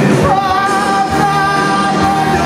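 Live rock-musical singing over a band: a singer holds one long note, starting a moment in.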